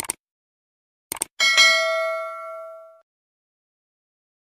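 Subscribe-button sound effect: a click, then a quick double click about a second in, followed by a bright notification-bell ding that rings out for about a second and a half.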